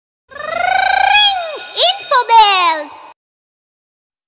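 Cartoonish intro sound effect for an animated notification bell: a warbling tone that rises, then a few quick swooping slides down in pitch. It stops about three seconds in.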